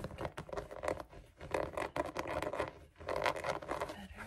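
Fingernails scratching and rubbing a tufted rug's pile and backing, with the rug's fabric rustling as it is lifted and folded over; quick, irregular strokes with a few louder flurries.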